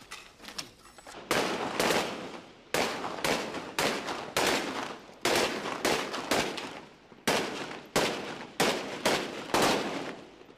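Gunfire: a string of single shots at uneven intervals, roughly one every half second to second, each sharp crack trailing off in a long echo.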